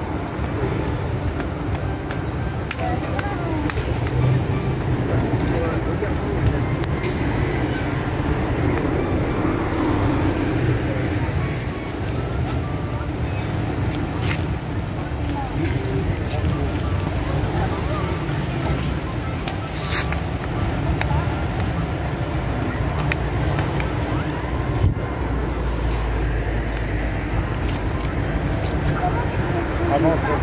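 Indistinct voices talking over a steady low outdoor rumble, with a couple of sharp clicks about a third and two-thirds of the way through.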